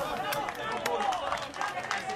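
Men's voices shouting and cheering a goal close by, several at once, with a few sharp hand claps among them.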